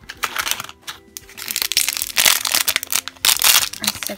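A foil blind bag crinkling loudly as it is handled and torn open, in rapid crackly bursts that are loudest about halfway through and again near the end.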